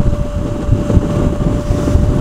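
Wind rushing over the microphone of a moving motorcycle, with the engine and road noise rumbling underneath and a thin steady whine throughout.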